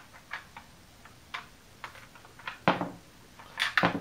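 Small hard-plastic clicks and taps, spread irregularly through a few seconds, as the push lever on a 1989 G.I. Joe Cobra Condor toy's wing is worked to release a small plastic bomb from its magazine. A louder knock comes in the last half.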